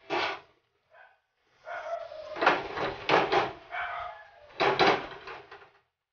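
Cooking oil poured into an empty metal wok on a stove. A sharp knock at the start and a faint one about a second in, then about four seconds of uneven pouring and handling noise.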